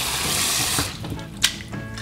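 Water running from a tap into a cooking pot of fruit, shut off about a second in, followed by a single short click.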